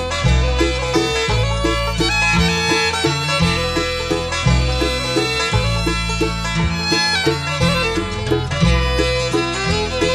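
Bluegrass band playing an instrumental passage with no singing: banjo and fiddle lead over guitar, mandolin and a bass line walking steadily underneath.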